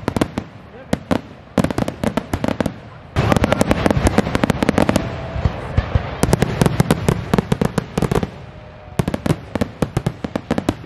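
Aerial fireworks display: a rapid string of bangs and crackling bursts. It is sparse at first, becomes a dense, loud, near-continuous barrage from about three seconds in to about eight seconds in, then thins out again.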